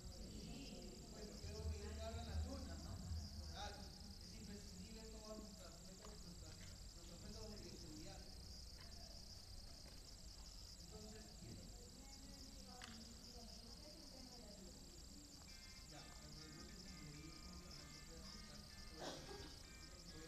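Faint, distant speech of a presenter in a large hall, too faint to make out words, over a steady high hiss.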